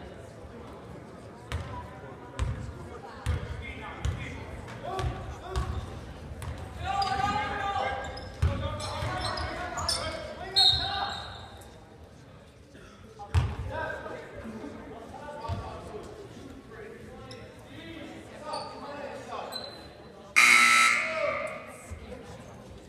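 Basketball game in a large gym: the ball bouncing on the hardwood floor, spectators' voices and shouts, and a brief high whistle about halfway through. Near the end, a loud scoreboard buzzer sounds for about a second and a half at a stoppage in play.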